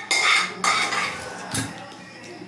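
Metal kitchen utensils and cookware clattering, three sharp clanks within the two seconds.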